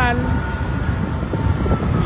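Diesel engine of a large salt harvester running as the machine drives past: a steady deep rumble with a faint high whine that sinks slightly in pitch.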